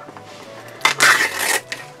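Paper seal being peeled off a compartment of a plastic Zuru 5 Surprise toy capsule: a brief crinkly rustle with small plastic clicks about a second in.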